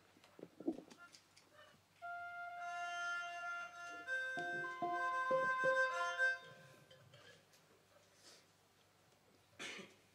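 A short run of sustained, flute-like notes, each held steady before stepping to the next pitch. It starts about two seconds in and stops after about four seconds. Faint clicks come before it, and a short breathy noise comes near the end.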